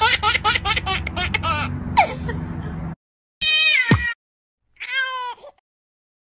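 Laughter in quick repeated bursts for the first two seconds or so, then two short cat meows, about three and a half and five seconds in, separated by abrupt silences.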